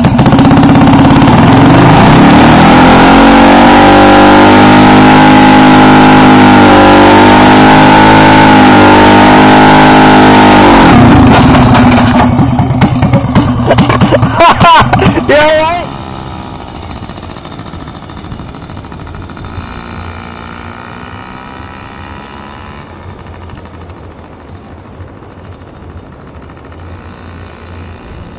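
Small mini bike engine revving hard and held at high revs, very loud and distorted, for about ten seconds. Around the middle the sound turns ragged and uneven as the bike crashes, then drops to a low steady background.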